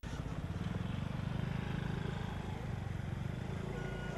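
A small motor scooter passing close by, its engine running steadily with a fast low pulse that eases off slightly near the end.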